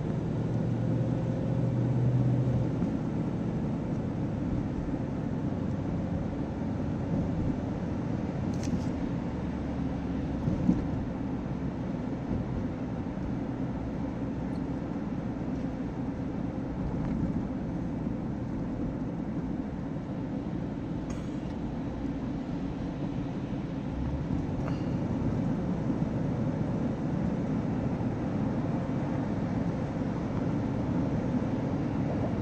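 Steady road and engine noise of a car driving at cruising speed, heard from inside the cabin, with a few faint clicks.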